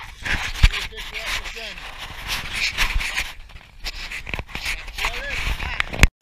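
Wind buffeting a body-worn camera's microphone, with rustling and handling knocks and a sharp thump about half a second in, plus a few faint voice-like sounds.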